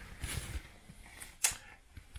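Handling noise as the inverter's metal lid is moved over the open chassis: a few soft knocks early, then one sharp click about one and a half seconds in.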